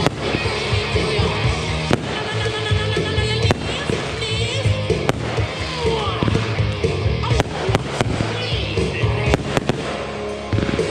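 Backyard consumer aerial fireworks bursting overhead, with several sharp bangs a second or two apart and a quick cluster near the end. Music plays throughout.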